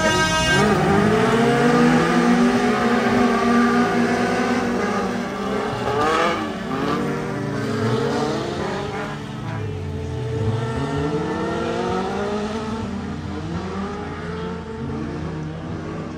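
Several stock cars' engines revving hard as the cars race, with many overlapping pitches climbing and dropping as they accelerate and lift off. The sound is loudest in the first seconds and slowly fades as the pack moves away.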